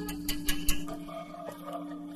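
A few sharp wooden knocks within the first second, the last the loudest, as a wooden chest is handled on the ground. Under them runs a steady low drone of background music.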